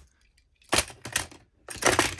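Die-cast Lightning McQueen toy car pushed by hand over a plastic Tomy level crossing and road track, its wheels and body clattering against the plastic in three short bursts of rattling clicks.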